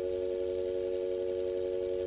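Telephone dial tone held steady and unbroken, the line left open after the call was cut off.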